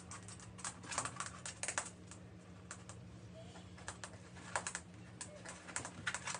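Light, irregular clicking and tapping in quick clusters, over a steady low hum.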